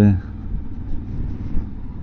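Steady low rumble of a motorcycle being ridden at low speed, heard from the rider's own seat.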